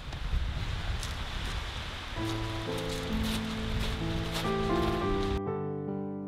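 A steady hiss of wind and surf on the beach with a few light clicks. Piano music comes in about two seconds in, and near the end the beach noise cuts off suddenly, leaving only the piano.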